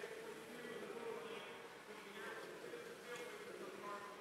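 Faint steady buzzing whine of competition robots' electric motors and mechanisms running on the field, under low arena background noise.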